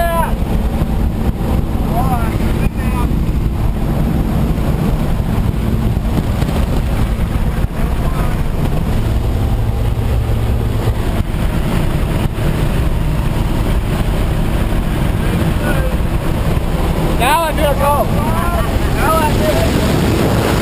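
Loud, steady rush of aircraft engine and wind noise inside a small jump plane's cabin, the door open for the jump. Short whooping shouts cut through a few times, a cluster of them near the end.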